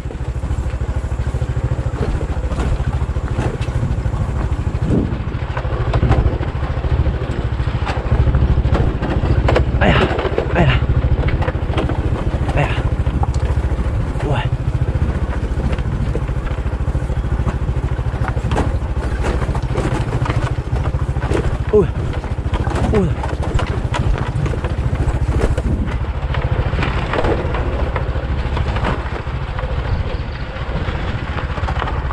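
Small motorbike engine running steadily at low speed down a rough, rocky dirt track, with scattered knocks and rattles as the bike jolts over the stones.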